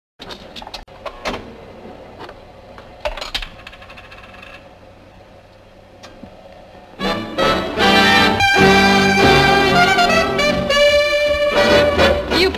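A few sharp clicks and clinks from a Wurlitzer jukebox as a coin goes in and a record is selected. About seven seconds in, a swing big-band record starts playing loudly, led by brass and saxophones.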